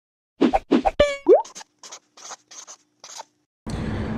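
Intro sound effects: two short plops, a ringing twang with a quick upward boing, then a run of short scratchy strokes like a pen writing. Near the end it cuts to the steady low rumble of a car interior.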